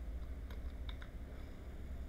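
Computer keyboard keys being pressed: a few soft, separate key clicks over a low steady hum.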